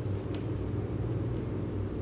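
A steady low rumble of background noise, with one faint crinkle of a folded paper sheet being handled about a third of a second in.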